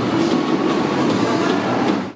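Treadmill running under a runner, its belt and motor making a steady mechanical noise with the rhythmic beat of footfalls on the deck.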